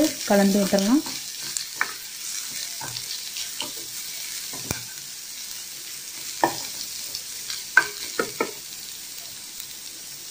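Sliced onions and grated carrot sautéing in oil in a stainless steel pan with a light sizzle, while being stirred, with scrapes and taps of the utensil against the pan. A few sharper knocks come around two-thirds of the way through.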